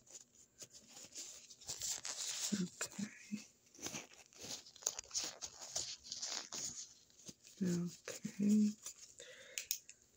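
Close-up crackly rustling and clicking in uneven bursts from a hand handling a small penlight right at the microphone. A few short hummed voice sounds come about two and a half seconds in and again near eight seconds.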